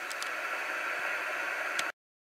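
Cobra 2000 GTL Supersnake CB radio hissing with steady sideband static on an open channel with no signal, with two faint clicks near the start and one near the end. The hiss cuts off suddenly just before the end.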